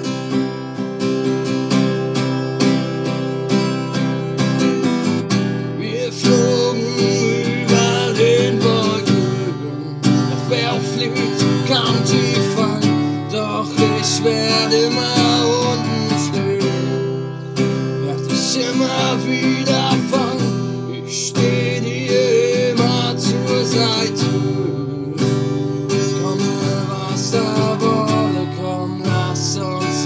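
Acoustic guitar strummed in a steady rhythm through an instrumental passage of a song.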